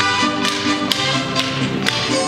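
Sharp metallic clacks of machetes being struck in time by dancers, about twice a second, over Mexican folk music with violins.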